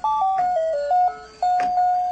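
Robotic laser ball toy playing its built-in electronic tune: a simple melody of plain beeping notes stepping up and down, with a short break between phrases.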